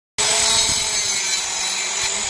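Compact handheld circular saw cutting lengthwise along a wooden plank, its motor running at full speed with a steady high whine over the noise of the blade in the wood. The sound cuts in abruptly just after the start.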